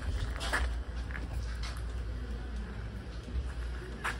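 Low, steady wind rumble on a phone microphone, with a few faint handling knocks as the camera is moved; no gunshot is fired.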